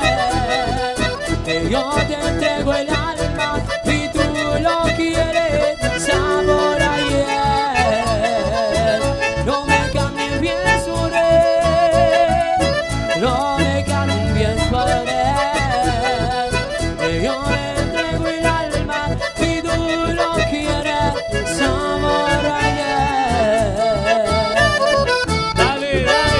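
Chamamé santiagueño band playing live, with an accordion carrying a wavering melody over a steady, danceable beat and bass. It is an instrumental stretch with no singing.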